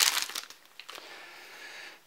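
Clear plastic bag crinkling as a folding knife is unwrapped from it, loud for about the first half second, then only faint rustling.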